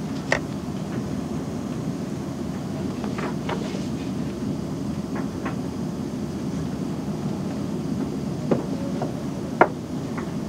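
Steady low background noise of a large, busy lab room, with a few short light clicks and taps scattered through it, the sharpest a moment after the start and just before the end.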